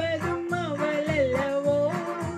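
A woman singing a love melody over a Technics electronic keyboard accompaniment with a steady beat. She holds a long wavering note that dips in pitch near the middle and comes back up.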